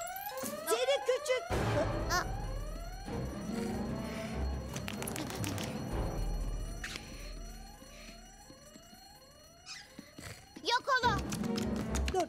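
A school fire alarm sounding with repeated rising whoop sweeps, set off by the break-glass call point. It dies away about eight or nine seconds in.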